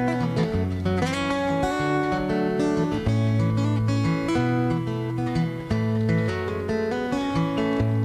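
Acoustic guitar strummed and picked through the instrumental close of a pop-folk song, with a bass line underneath.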